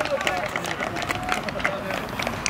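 Footballers' shouts and calls on the pitch, a few long calls among them, with scattered short clicks and knocks.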